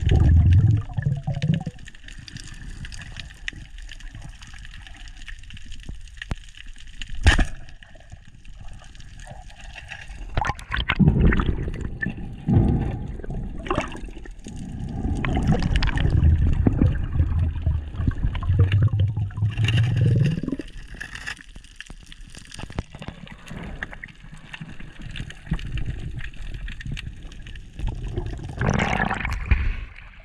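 Water gurgling and sloshing around an underwater camera on a speargun, in uneven swells of low rumbling water noise. There are a few sharp clicks, the clearest about seven seconds in, and a brighter splashing rush near the end as the camera comes up through the surface.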